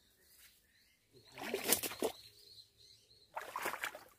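Leafy branches rustling in two short bursts, about a second in and again near the end, as fruit is picked from dense bushes, with faint birdsong in the background.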